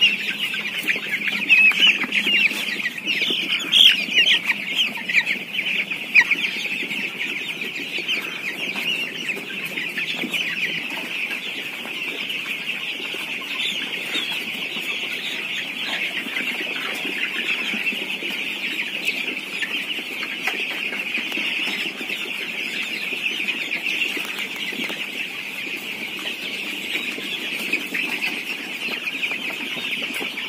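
A flock of young broiler chicks peeping continuously, many high calls overlapping into a steady chorus, with a few louder calls in the first several seconds.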